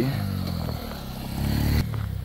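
Small motorcycle engine running as the bike rides by close, getting louder, then cut off suddenly near the end.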